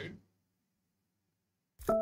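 Dead silence, then near the end a bright electronic chime sounds: a struck, piano-like note that rings on and begins a short falling run of notes.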